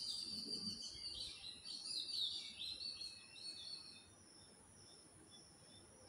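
Small birds chirping faintly: a quick run of short, high chirps that dies away about four seconds in.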